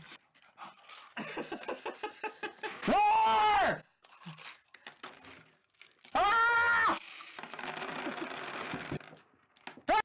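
Men gasping and laughing, with two loud drawn-out vocal cries about three and six seconds in. Between the cries there is rattling and crunching as small hard candies are poured from a glass jar into an open mouth.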